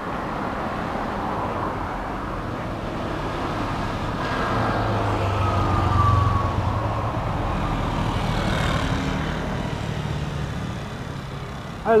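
Road traffic: a motor vehicle passes close by, swelling to a peak about six seconds in and then fading, with a falling whine as it goes past.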